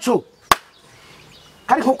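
A single short, sharp impact sound about half a second in, with a man's speech before and after it.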